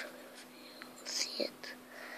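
Faint whispering, with a short hissing breath about a second in.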